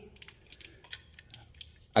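Faint scattered light clicks and crinkles of a plastic corrugated wiring loom and its connector being handled by hand.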